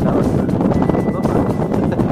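Strong wind buffeting the phone's microphone, a steady low rumbling roar.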